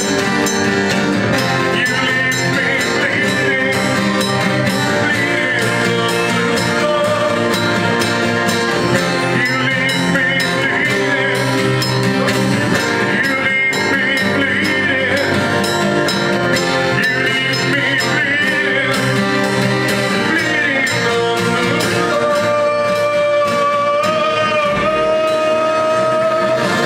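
Live neofolk band playing: acoustic guitar and drums, with a voice singing a wavering melody through the vocal microphone. The melody settles into long held notes near the end.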